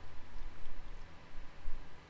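A few faint ticks from a computer mouse's scroll wheel as a file list is scrolled, over low rumbling bumps on the microphone.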